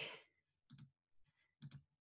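Near silence with two faint computer mouse clicks, one just under a second in and one near the end, as a filter menu is opened.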